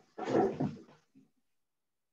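A short, loud animal call, under a second long near the start, heard through a video call participant's microphone.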